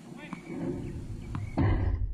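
Outdoor tennis point being played: a few faint, sharp hits of racket on ball, over a low rumble. Near the end comes a short, loud burst of noise.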